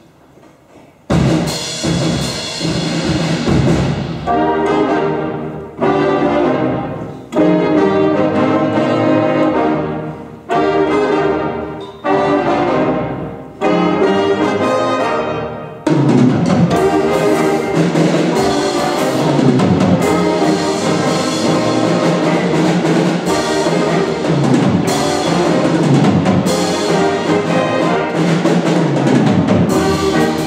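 Jazz big band of saxophones, trumpets and trombones playing. After a quiet first second the full band comes in with a run of accented chords, each fading away, about every one and a half seconds; about halfway through it settles into continuous full-band playing.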